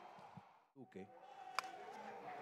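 Faint ballpark broadcast background that cuts to silence for an instant about halfway through, at a splice between two highlight clips. After it comes a brief faint voice fragment and a single click.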